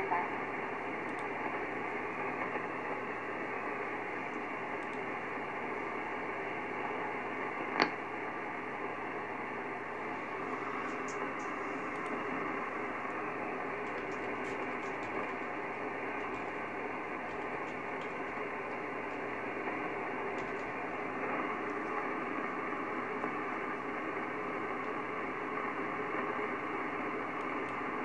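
Steady hiss and static from a Kenwood TS-950SDX HF receiver on an open 11.330 MHz upper-sideband aeronautical channel with nobody transmitting. The sound is cut off above about 3 kHz, and a single sharp crackle comes about eight seconds in.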